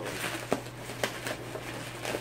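Plastic bubble wrap crinkling and rustling as it is pulled from around a vase, with a couple of sharp clicks, the loudest about half a second in.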